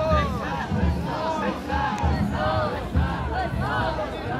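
A large group of men shouting festival calls together, many voices overlapping in repeated rhythmic bursts: the chanting of a dashi float-pulling team marching in procession.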